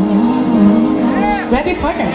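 A woman singing a slow ballad live into a microphone over a backing track, her voice gliding and wavering on a low note for about a second and a half before moving on.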